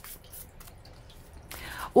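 Faint, soft flicking and rustling of a tarot deck being shuffled by hand, overhand, with a few light clicks of the cards.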